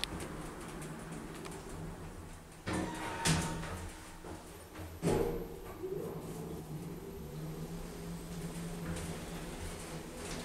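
ThyssenKrupp traction lift's automatic sliding doors closing, shutting with a knock about five seconds in. The cab's drive then sets off with a steady hum as the lift starts to travel.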